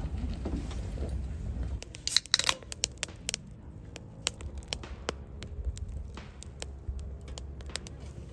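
A loud crackling, rustling burst about two seconds in, then a drink poured into a metal camping mug, foaming up with many small sharp pops of fizz.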